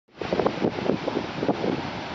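Wind buffeting the microphone in irregular gusts over the rush of heavy surf washing up a sandy beach.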